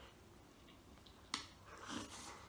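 Quiet eating, mostly near silence, with one short, sharp lip smack about a second and a half in.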